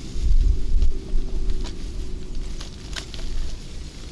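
Wind buffeting the microphone with a low rumble, strongest in the first second, and the crinkling of a plastic carrier bag being handled, with a few sharp crackles.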